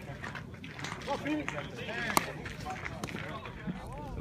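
Distant voices on a baseball field, with one sharp crack a little after halfway through: a bat hitting a baseball during fielding practice.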